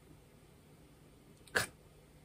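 Near silence, room tone only, through a pause in speech, then one short, sharp spoken syllable "ka" near the end as a man resumes talking.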